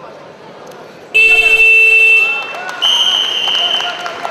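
Arena timekeeper's buzzer sounding loudly for about a second, signalling the end of a wrestling bout, followed near the end by a higher, steady whistle blast, over crowd voices.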